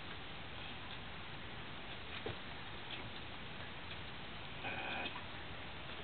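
A few faint, sharp clicks of an Asus Eee PC 1000H netbook's keys, spaced irregularly over a steady hiss, with a short rustle just before five seconds in.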